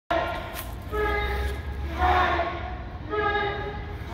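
A crowd chanting in unison: held, sung-out phrases that change pitch and repeat about every two seconds, each broken by a short burst of shouting.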